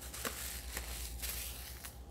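Paper and plastic craft-supply packaging rustling and crinkling as it is handled and set down, with a few light clicks.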